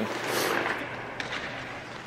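Ice rink ambience: a steady hiss of background noise that slowly fades, with a short high scrape about half a second in.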